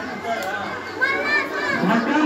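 Children's voices chattering and calling out over one another, a hubbub of overlapping speech; a higher child's voice stands out about a second in.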